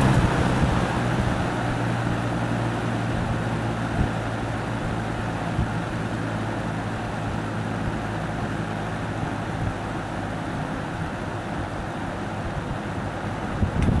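Galaxy box fan running on its low setting: a steady rush of air over a motor hum, easing down a little as the blades slow from medium speed. A couple of light knocks come about four and five and a half seconds in.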